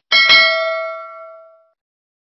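Notification-bell 'ding' sound effect from a subscribe-button animation: one bright bell strike with several ringing tones that fade out over about a second and a half.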